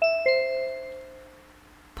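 Two-note 'ding-dong' chime: a higher note, then a lower one about a quarter second later, both ringing out and fading over about a second and a half. It is the cue that opens a recorded listening dialogue.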